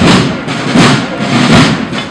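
Procession drums beating a slow, steady march: a loud stroke about every three-quarters of a second, each one ringing on briefly.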